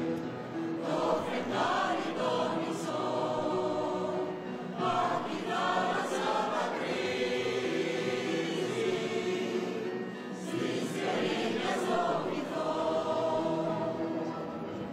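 A choir singing slow, held notes.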